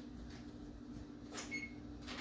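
Low steady hum of an appliance, with one short soft knock about one and a half seconds in.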